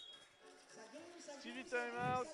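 Quiet courtside sound of a 3x3 basketball game. A faint high steady tone fades out just after the start, and a voice is heard near the end.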